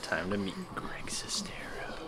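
Indistinct speech: a brief low murmured voice followed by hushed, whispered sounds.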